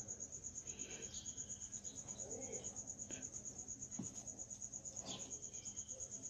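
Insect chirping steadily in the background: a high, pulsing trill at about seven pulses a second, with a couple of faint soft knocks about three and four seconds in.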